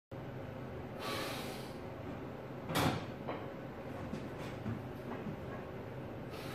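A lifter's short hissing breath about a second in, then one sharp knock, the loudest sound, and a few lighter clicks as a loaded barbell is walked out of a squat rack.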